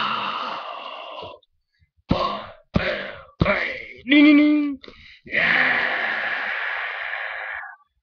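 A person making breathy, exhaled vocal sound effects: three short bursts, then a short voiced groan, then a long breathy exhalation that fades out.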